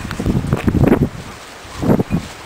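A man laughing breathily close to the microphone: a quick run of short bursts in the first second and one more near the end.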